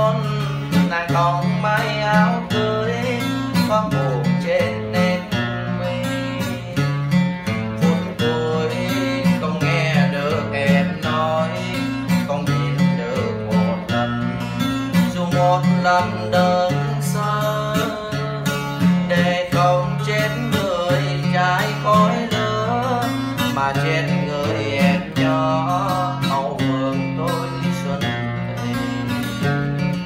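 Acoustic guitar music: a guitar-led instrumental passage with a steady, repeating bass line.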